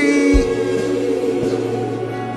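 Worship singing: a man's voice through a microphone slides up into one long held note, with other voices singing along.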